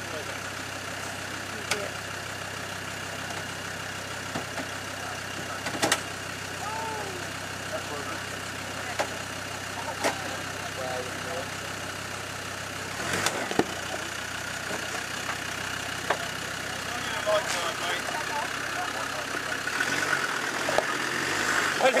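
Land Rover Discovery 2 Td5's five-cylinder turbodiesel idling steadily, with a few sharp knocks over it. About thirteen seconds in the engine note changes, and near the end it turns uneven.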